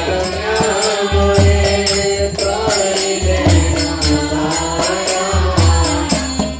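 Devotional kirtan singing: a voice carrying a winding melody, over a drum struck in a recurring low pattern and steady, rhythmic clashing of hand cymbals.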